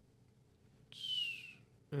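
A short, breathy whistle about a second in, its single tone sliding slightly downward before it stops after under a second.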